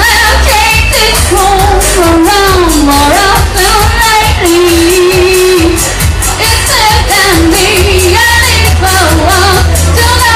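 A woman singing live into a microphone over a loud band accompaniment, with a heavy bass and a regular beat.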